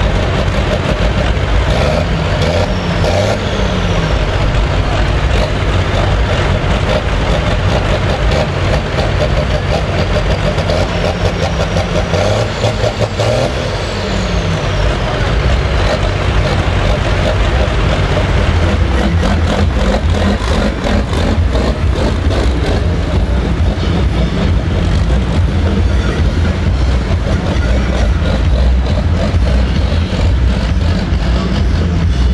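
Diesel engine of a turbocharged International tractor running hard and revving, its pitch climbing and dropping a few seconds in and again about halfway through, with a high whine rising and falling there.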